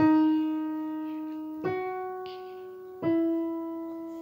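Digital piano playing three single sustained notes one after another, each struck and left to fade, the middle one a little higher in pitch than the other two. They are reference pitches for violin intonation practice.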